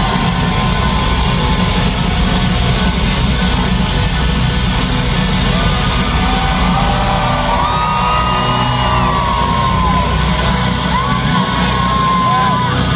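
A live rock band playing loudly in an arena, heard from within the crowd, with heavy bass and crowd yells. A melody line comes in about halfway through.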